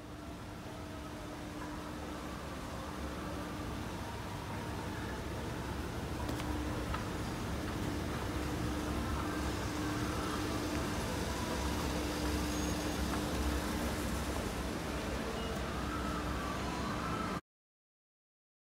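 Escalator running: a steady low rumble with a faint hum that comes and goes, cutting off suddenly near the end.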